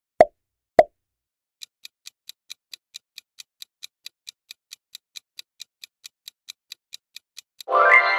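Quiz sound effects: two quick pops, then a countdown timer ticking evenly about four to five times a second. Near the end the ticking gives way to a loud bright chime marking time up.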